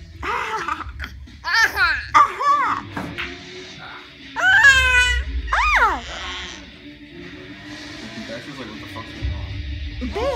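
A toddler squealing and shrieking with laughter: a few short, high-pitched squeals about one and a half to two and a half seconds in, then a longer rising-and-falling shriek around the middle, over TV music and talk in the background.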